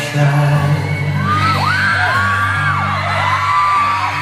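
Live band playing a slow pop ballad's instrumental passage between sung lines, with steady low sustained notes. From about a second in, fans close to the recording scream over it in several long high-pitched shrieks that rise, hold and fall.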